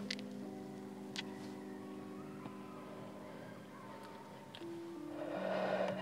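Soft background music of held, sustained notes, with the chord changing twice near the end.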